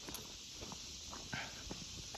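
Faint footsteps of a person walking on a concrete sidewalk, soft irregular steps over a steady hiss.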